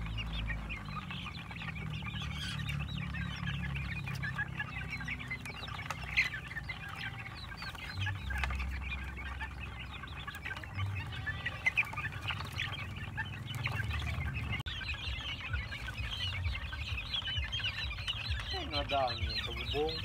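A flock of young gamefowl chickens calling continuously while feeding, a dense overlapping chatter of short, high chirping calls and clucks.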